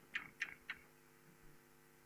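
Chalk tapping and stroking on a blackboard as an expression is written: three short, faint clicks in the first second, then a steady low room hum.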